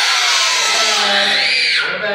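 A group of young children shouting together in one long, loud sustained yell that cuts off abruptly at the end.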